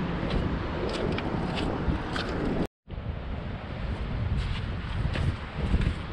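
Wind buffeting the microphone with a low rumble, with a few faint clicks over it. The sound drops out completely for a moment a little under halfway through, at an edit cut.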